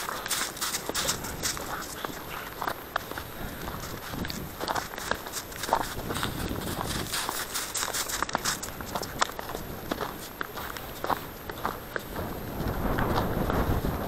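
A person's footsteps walking on a snowy path, a long run of short, irregular steps.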